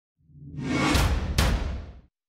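Logo-sting sound effect for a news show's title card: a whoosh swelling up over a low rumble, two sharp hits close together about a second in, then fading out.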